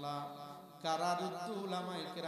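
A man's voice intoning a prayer of supplication (dua) in a slow, drawn-out chant, holding long notes, with a louder new phrase beginning about a second in.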